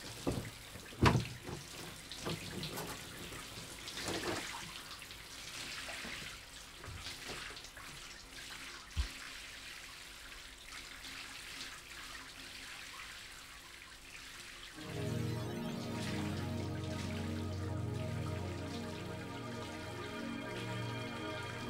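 Shower water running behind a bathroom door, with fabric rustling and a few light knocks from clothes being handled. Soft background music comes in about fifteen seconds in and carries on.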